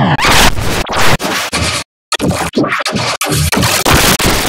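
Harsh, glitchy, digitally distorted audio: a falling pitch glide at the start, then a run of choppy scratching noise bursts, with a short cut to silence about halfway through.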